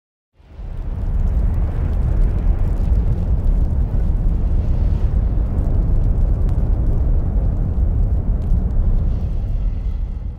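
A loud, continuous rumbling roar with scattered faint crackles, a fiery sound effect under the opening titles. It starts about half a second in and begins fading near the end.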